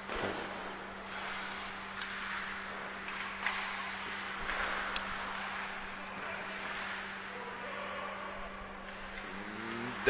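Ice hockey rink sound during play: skates scraping and carving the ice, with a few sharp clicks of sticks and puck, over a steady low hum.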